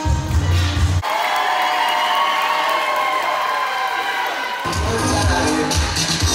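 Music with a heavy bass beat over a cheering, screaming crowd. The beat drops out about a second in, leaving the crowd's cheering, and comes back near the end.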